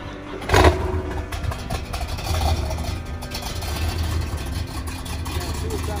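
1970 Oldsmobile 442's 455 V8 firing up about half a second in with a loud burst, then running with a steady low rumble.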